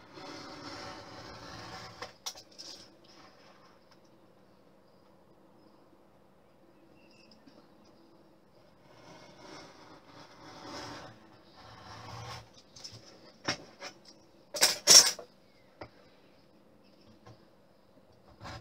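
Craft knife blade scraping along scored lines in a wooden strip, guided by a metal ruler, in a few short strokes with pauses between, re-cutting the edges of a wire groove. About three-quarters of the way through come two sharp knocks close together, the loudest sounds.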